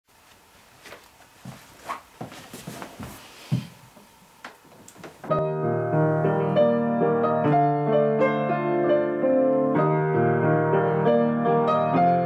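Faint scattered knocks and rustles, then about five seconds in a piano begins playing: held chords over a sustained bass line, with notes moving above them.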